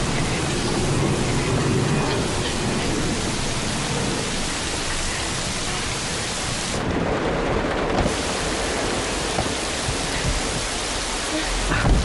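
Heavy rain falling steadily, with thunder, as one dense even noise. A single thump near the end.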